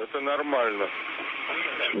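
A voice speaking briefly over a space-to-ground radio link, then about a second of steady radio hiss.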